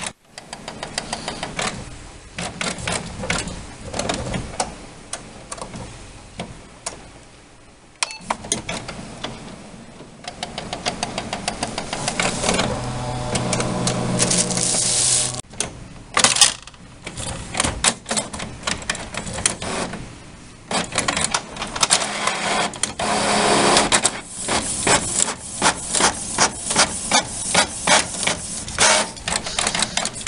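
Canon Pixma MX922 inkjet printer running a print job: its motors whir and its mechanism clicks and ticks in quick repeated runs, with a steadier whirring stretch about halfway through. The B200 error has been cleared by unclogging the printhead, and the printer is printing normally again.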